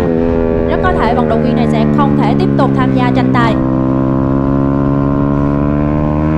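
Racing 150cc sportbike engine heard from its own onboard camera, held high in the revs through a corner: a steady, loud note whose pitch eases down slightly over the first few seconds and then holds.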